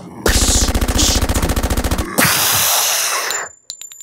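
Machine-gun sound effect: a rapid, even burst of automatic fire lasting about two seconds, followed by a loud rushing blast of noise that dies away, then a few faint clicks near the end.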